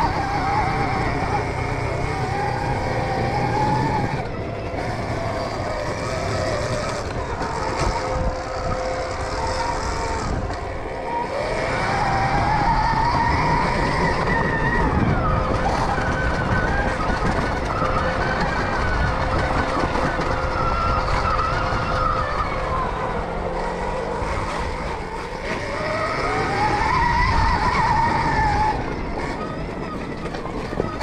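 Stark Varg electric dirt bike's motor whining, its pitch rising and falling as the throttle is opened and closed. Underneath runs a constant rough rumble and rattle from the bike and tyres on a rutted dirt trail.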